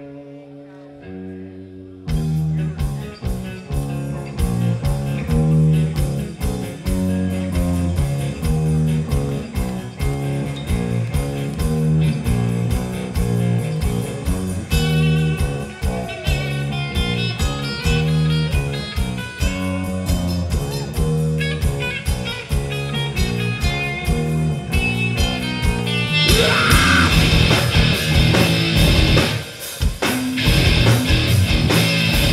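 Live metal band: a guitar plays a riff alone, then about two seconds in the drums and bass come in loud with a steady beat under the guitar riff. Near the end the music gets louder and denser.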